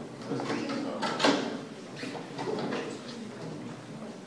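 The top cover of a metal-edged case being slid and lifted off, with scraping and knocking. The sharpest scrape comes about a second in.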